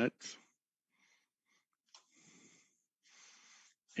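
Two faint breaths of a man pausing between phrases, about two and three seconds in, after the end of a spoken word.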